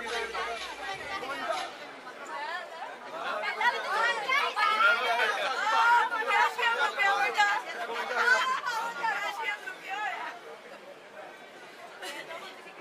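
A crowd of people chattering, many voices talking over one another at once. The talk grows livelier from about three seconds in and thins out near the end.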